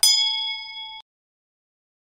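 A single metallic ding from a subscribe-button animation sound effect: one bell-like strike that rings for about a second, then cuts off suddenly.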